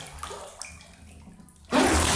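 Bath water: a quiet low rumble while the man's head is under the surface, then about 1.7 s in a sudden loud rush of splashing, streaming water as he comes up out of the bathtub.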